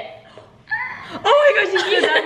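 Girls laughing and chuckling together, starting about two-thirds of a second in after a brief lull.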